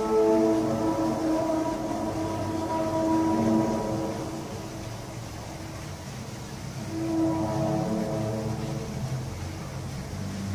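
A loud, drawn-out, trumpet-like drone of several tones sounding over the valley, the kind of sound reported as 'strange trumpet sounds in the sky'. It fades about four seconds in and swells again about seven seconds in.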